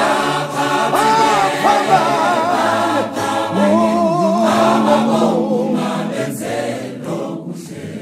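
Gospel choir of men and women singing in harmony, with a lower voice holding one long note through the middle. It grows softer near the end.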